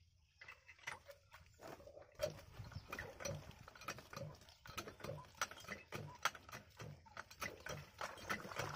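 Small diesel water-pump engine being turned over by hand crank: a regular low knock about twice a second, with sharp metallic clicks from the crank and engine.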